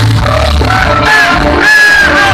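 Live pop-rock band playing loud with a male singer's vocal line over heavy bass; near the end the bass drops away briefly while he holds a high note.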